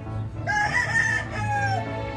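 A gamefowl rooster crows once, starting about half a second in and lasting a little over a second, over background music with a steady beat.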